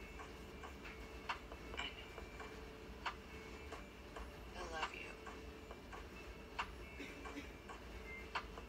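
Faint, sharp clicks about every couple of seconds over a steady low hum, with a faint voice briefly heard about five seconds in.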